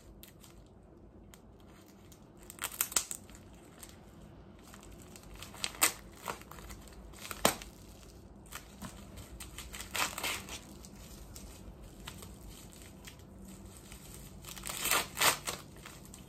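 A small white mailer envelope being torn and unwrapped by hand: short bursts of crinkling and tearing several times over, with quiet handling between, the loudest near the end.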